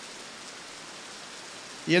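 Steady, even hiss of background noise with no distinct events, then a man's voice begins right at the end.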